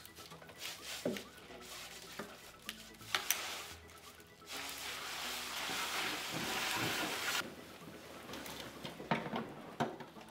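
Liquid nitrogen being poured from a plastic tub back into its storage dewar: a steady hiss of pouring liquid lasting about three seconds, starting about halfway through. A sharp click comes shortly before the pour.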